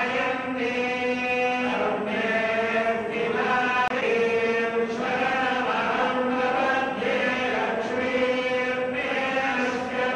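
Priests chanting Vedic mantras in unison during a ritual bath of the deity idols, in long held phrases.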